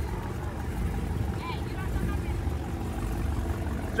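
Muscle-car V8 engines idling: a low, steady rumble, with faint voices in the background.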